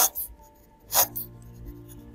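Graphite pencil sketching on watercolour paper: two short scratchy strokes, one right at the start and one about a second in, over soft background music with long held notes.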